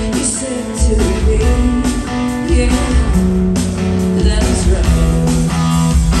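A live pop-rock band playing loudly through the venue's PA, with guitar, bass and drums, and a woman's lead vocal with backing singers.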